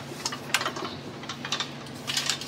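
A few light clicks and taps as the stand mixer's power cord and plug are handled, over a faint steady hum.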